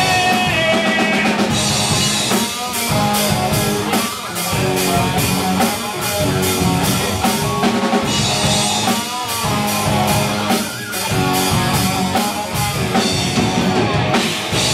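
Live rock band playing an instrumental passage: electric guitars over a drum kit keeping a steady, driving beat with cymbals, with no vocals.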